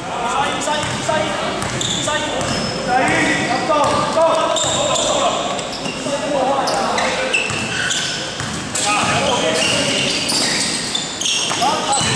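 Indoor basketball game: players' voices calling out over the court, with a ball bouncing and many short high squeaks from sneakers on the floor, all echoing in a large gym.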